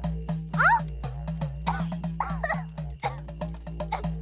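Dramatic background score: a fast, steady percussion beat over a low drone. Over it come several short, high cries that rise and fall, heard about once a second: a young girl's muffled whimpers as a hand is held over her mouth.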